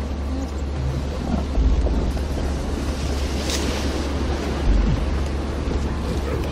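Wind buffeting the microphone: a steady low rumble that surges louder about a second and a half in and again near five seconds.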